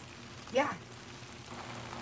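Faint, steady sizzle of chow mein (noodles, chicken and vegetables) cooking on a hot Blackstone flat-top griddle.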